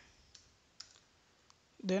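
A few faint, widely spaced computer keyboard key clicks, then a voice begins near the end.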